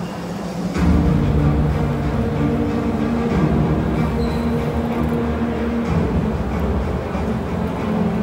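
Bodybuilding free-posing routine music, heavy in the bass with long held tones, coming in about a second in.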